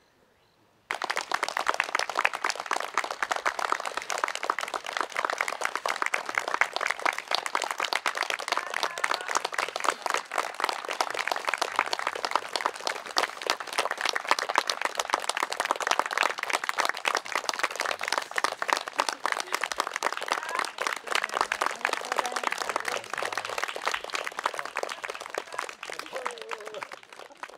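Audience applauding: many hands clapping, starting suddenly about a second in and holding steady, easing off slightly near the end.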